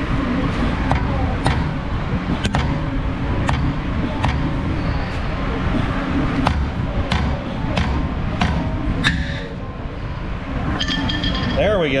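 Repeated sharp metallic knocks, about one every half second to a second, as a seized front brake rotor on a BMW 335i is struck to break it loose from the hub. Some knocks ring briefly, and a steady low hum runs underneath.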